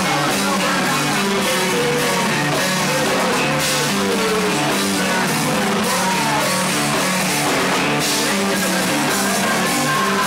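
A rock band playing live: electric bass and guitar over a steady, driving beat.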